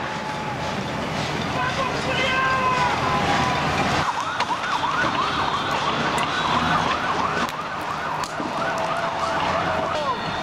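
Police siren yelping, a fast rising-and-falling wail repeating about twice a second, starting about four seconds in over the general noise of a street protest.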